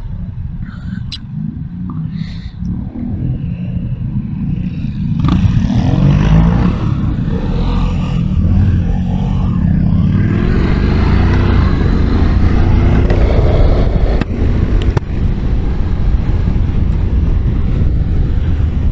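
Honda NC750X parallel-twin engine running at low speed through a turn, then accelerating from about five seconds in, its pitch rising, with wind rushing over the microphone as speed builds.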